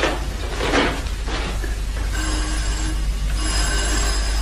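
A few soft swishing sounds, then an electric bell rings in two short bursts about halfway through: a sound effect in a radio drama.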